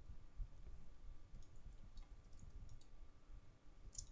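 A few faint computer mouse clicks scattered through a quiet room with a low background hum.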